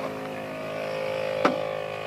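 ARB twin electric air compressor running with a steady hum as it fills its air tank, the pressure still climbing toward about 160 psi. A single sharp click comes about one and a half seconds in.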